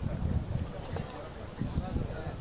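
Faint distant voices calling, over irregular low rumbling thuds.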